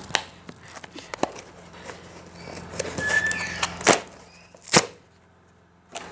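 Cardboard tripod box being opened by hand: scattered taps, scrapes and flap clicks of the cardboard, with a brief squeak about three seconds in and two sharp clicks near four and five seconds.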